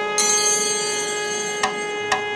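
A wind instrument holds one long, steady note. A second, brighter note joins about a fifth of a second in, and there is a single sharp tick near the end.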